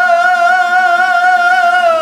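A man singing in traditional Kazakh style, holding one long note with a slight waver, over a strummed dombyra.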